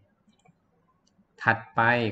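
A few faint computer mouse clicks in a quiet pause, then a man's voice starts speaking about a second and a half in.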